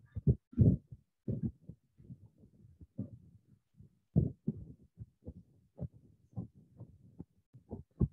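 Soft, irregular low thumps and knocks, a few each second, picked up close by a headset microphone, with a louder cluster near the start and another about four seconds in.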